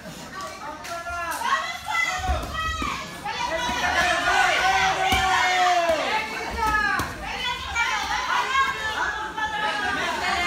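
Spectators shouting and calling out during an amateur boxing bout, several voices overlapping, with one long held shout a few seconds in.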